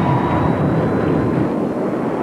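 Audi A6 car at high speed: a steady rush of engine and wind noise with a faint thin high whine running through it.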